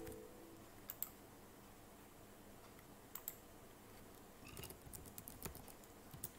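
Faint computer keyboard typing: a few scattered keystroke clicks, then a quick run of keystrokes from about four and a half to five and a half seconds in, as a short command is typed.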